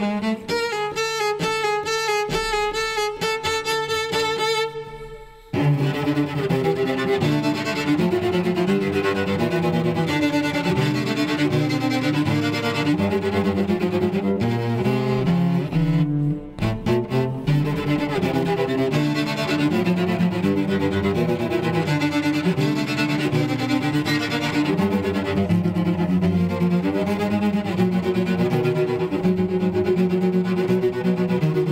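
Solo cello played with the bow. It opens on a long held high note with vibrato that fades out about five seconds in, then moves into a continuous line of shorter changing notes, broken once briefly about halfway through.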